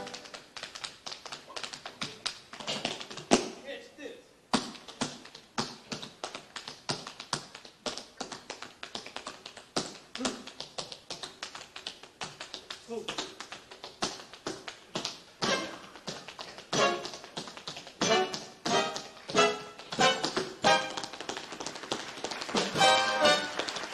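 Tap shoes on a stage floor, playing a fast, unaccompanied tap break: the brass band cuts out at the start, leaving only the clicks of the taps. The taps grow denser and louder in the second half.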